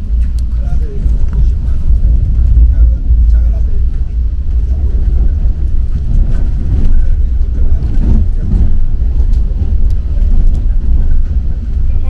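Steady low rumble of an ITX-MAUM electric train running at speed, heard from inside the passenger cabin, with a few light crackles from a plastic snack wrapper being handled.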